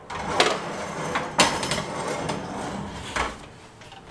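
A hot lidded cast-iron Dutch oven set onto a metal oven shelf and pushed into the oven, with sharp metal knocks about half a second and a second and a half in. A steady hiss runs under it and dies away near the end.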